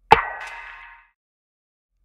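A single electronic snare drum hit with its highs filtered out by a low-pass EQ, so it sounds dull and has lost its snap; it strikes just after the start and rings away over about a second.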